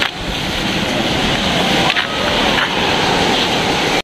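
Wind rumbling on the microphone over the steady rush of surf on a sandy beach.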